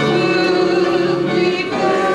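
Congregation singing a hymn together, a woman's voice at the pulpit microphone among them, the voices holding long notes.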